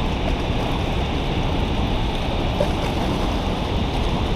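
Steady rush of turbulent white water churning below a dam spillway.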